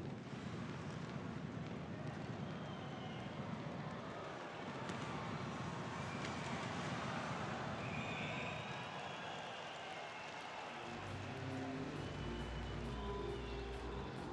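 Ice hockey arena ambience: a steady wash of crowd noise during play. About eleven seconds in, music comes in and carries on.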